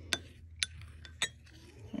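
A metal spoon stirring yeast and warm water in a glass bowl, clinking against the glass three times, about half a second apart.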